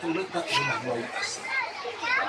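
Young passengers chattering, several voices talking over one another.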